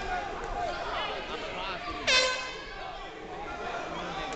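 A single loud horn blast about halfway through, starting suddenly and fading over about half a second: the signal for the end of a round in an amateur boxing ring. Crowd voices run underneath.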